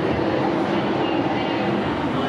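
Steady, even din of a large indoor hall full of people.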